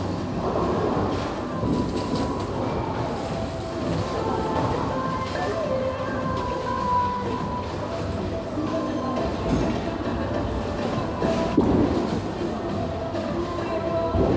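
Bowling balls rolling down the lanes with a continuous low rumble, with music playing in the alley. A louder crash comes about eleven and a half seconds in.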